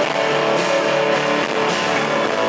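Live pop-rock band playing an instrumental stretch of a song, without singing.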